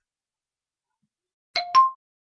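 Silence, then about a second and a half in a two-note chime sound effect: a short lower ding followed quickly by a higher one.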